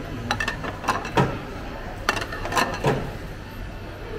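Empty sushi plates being dropped one after another into a table-side plate-return slot. Each gives a short clink or clatter, several in all over the first three seconds.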